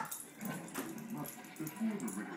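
A small dog making faint vocal sounds while tussling with a toy, over television voices in the background, with a person laughing near the end.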